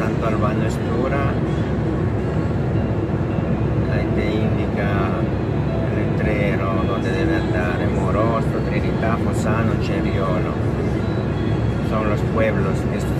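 Steady drone of a lorry's engine and tyres heard from inside the cab at motorway speed, with a voice coming and going over it.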